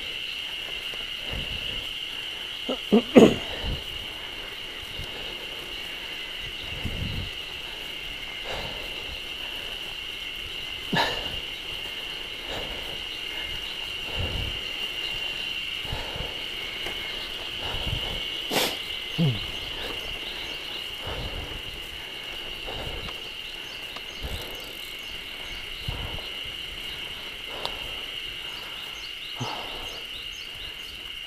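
A steady, high-pitched insect chorus sounds from the roadside forest throughout. Under it a bicycle rolls over a rough, cracked road, with low rumbles and a few sharp knocks and rattles from bumps. The loudest clatter comes about three seconds in, and others come near eleven and eighteen seconds.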